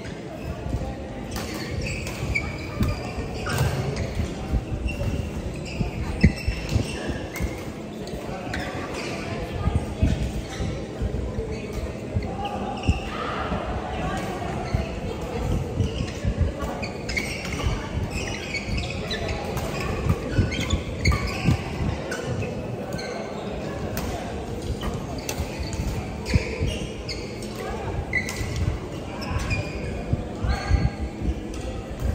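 Busy indoor badminton hall: frequent short, sharp knocks from rackets hitting shuttlecocks and from players' footwork on the courts of several games, with people's voices in the background.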